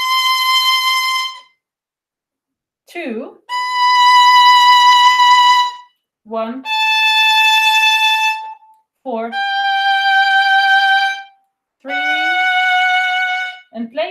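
Solo violin playing five slow, sustained bowed notes of about two seconds each, stepping down a G major scale in the upper register, part of a three-octave scale played descending. Short spoken finger counts fall in the pauses between the notes.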